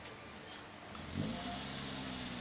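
Small pickup truck's engine pulling away close by: its pitch rises about a second in, then holds steady over background street noise.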